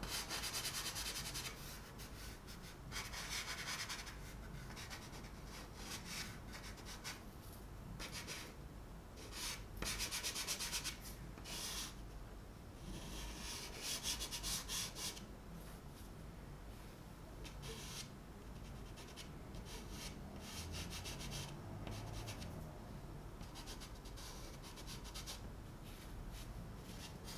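Chalk pastel stick rubbing and scratching across paper in runs of short strokes, with louder bouts of quick scribbling about ten and fourteen seconds in.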